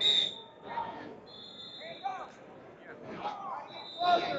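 Whistles blowing three times: a sharp, loud blast at the start, a longer one about a second and a half in, and another near the end. Under them, shouting and crowd chatter echo in a large gymnasium.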